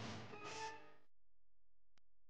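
Background music with a few held notes, cutting off suddenly about halfway through, then near silence.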